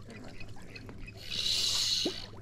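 Fly reel's clicking ratchet buzzing for about the last second, as line runs off or is wound onto the reel while a hooked trout is played.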